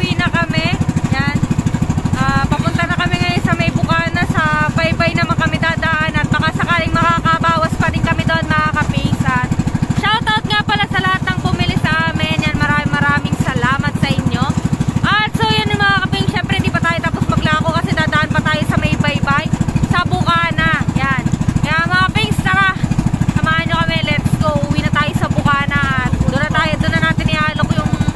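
Engine of a motorised outrigger boat (bangka) running steadily under way, a constant low drone.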